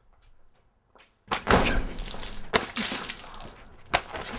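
A series of thumps and crashes: a sudden loud hit about a second in, another about halfway through, and a sharp crack at the very end, with noisy scuffling between them.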